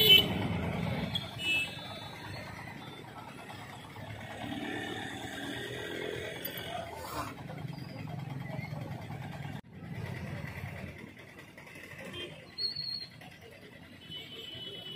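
Town street traffic: motorcycles and other vehicles passing over a steady low rumble, with a loud burst at the very start and a short high-pitched sound near the end.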